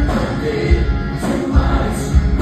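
A live rock band playing, with electric guitar, a heavy low end and singing, loud and full throughout.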